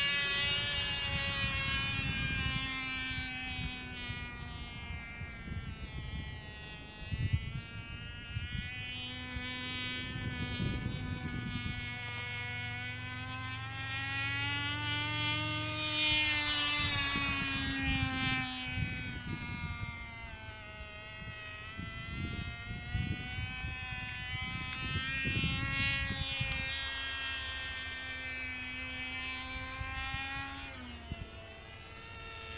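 Cox .049 Tee Dee two-stroke glow engine running flat out on a small model airplane in flight: a high, buzzing whine. Its pitch slowly rises and falls in waves as the plane moves overhead.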